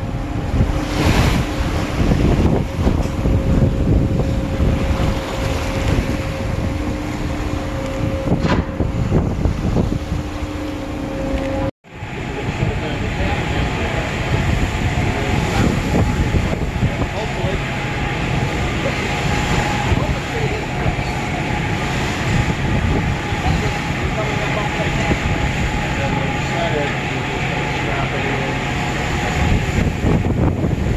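Deck noise at a research ship's stern: wind buffeting the microphone over a steady machinery hum and the rush of the wake. About twelve seconds in, the sound cuts out for an instant and another stretch of deck noise follows, with a different steady hum and whine.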